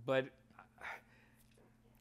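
A man says one word, then pauses and takes a short audible breath in a little under a second in.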